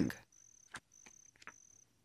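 Crickets chirping: one high, steady trill broken into pulses about half a second long with short gaps, with a couple of faint clicks.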